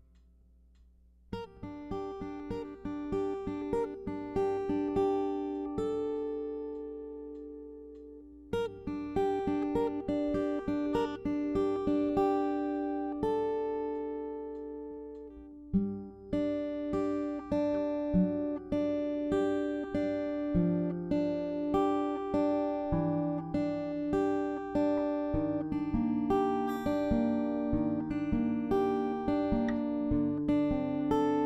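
An acoustic guitar being fingerpicked, starting about a second in. Twice it lets a chord ring and fade before picking on. From about halfway, bass notes join for a fuller picked pattern.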